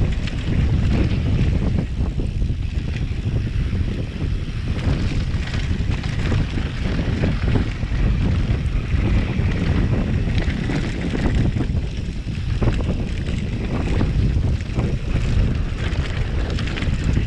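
Wind rushing over the microphone of a mountain bike descending a dirt trail at speed, with the tyres rumbling on the dirt and frequent small knocks and rattles from the bike over bumps.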